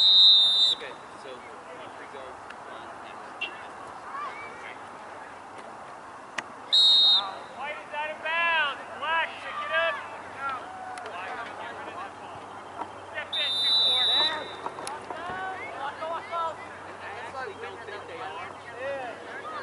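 Referee's whistle blown in three short blasts several seconds apart, the last the longest, over distant shouting and chatter from players and sidelines.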